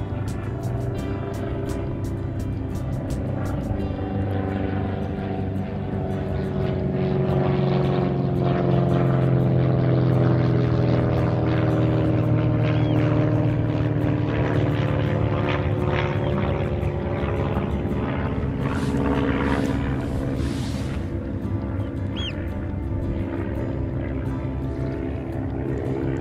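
Propeller aircraft flying over with a steady engine drone. It grows louder to a peak about ten seconds in, its pitch sliding slowly down as it passes, then fades somewhat.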